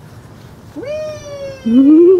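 Human vocal exclamations: a drawn-out, high-pitched cry starting about a second in and falling slightly in pitch, then a louder cry rising in pitch near the end.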